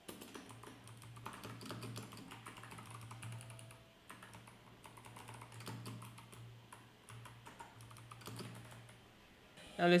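Typing on a computer keyboard: quick runs of key clicks, easing off briefly about four and seven seconds in, over a low steady hum.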